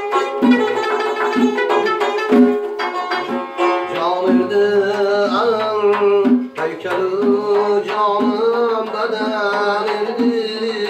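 Live folk music on a long-necked plucked lute, strummed in a steady rhythm of about two beats a second. A singing voice with a wavering, sliding melody joins about four seconds in.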